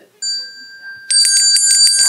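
A small hand bell struck once, then rung rapidly for about a second, with a bright ringing tone: the signal that the speaker's time is up.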